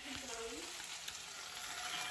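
Spinach sizzling steadily in a hot frying pan.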